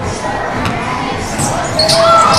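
A basketball being dribbled on a hardwood gym floor, under the steady chatter and shouts of a large crowd of schoolchildren.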